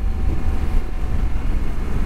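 Riding noise from a 2020 Honda Africa Twin parallel-twin motorcycle cruising at about 40 mph: a steady, heavy low rumble of wind on the helmet microphone, with engine and road noise underneath.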